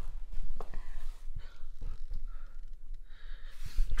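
Microphone handling noise from a handheld camera being moved: a steady low rumble with scattered soft bumps and knocks.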